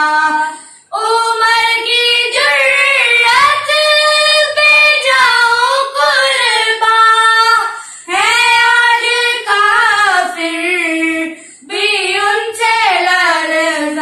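Two children, a girl and a boy, singing an Urdu naat together without instruments, in long held melodic lines. They break briefly for breath about a second in, just past halfway, and again near the end.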